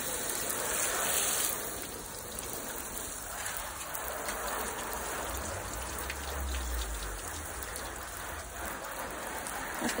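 Hose spray rinsing a car's bodywork, with water hissing and splattering on the paint. The hiss is brightest for about the first second and a half, and a low rumble comes in a little past the middle.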